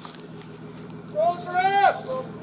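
A low steady hum of idling vehicles, then about a second in a single loud, drawn-out shouted call from a police officer.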